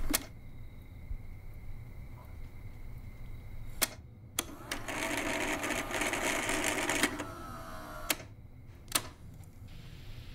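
Telephone answering machine being worked: sharp clicks as its selector knob and mechanism switch, and a cassette tape drive whirring for about two and a half seconds in the middle.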